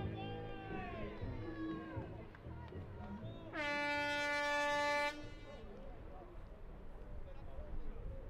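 Stadium hooter (air horn) giving one steady blast of about a second and a half, starting a little over three and a half seconds in and cutting off sharply, as the rugby game clock reaches zero: the time-up signal for the half.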